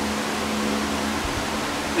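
Electric shop fans running: a steady rush of air with a steady low hum under it.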